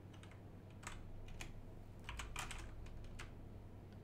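Typing on a computer keyboard: irregular key clicks in short runs, most of them bunched in the middle seconds, as a short command is typed.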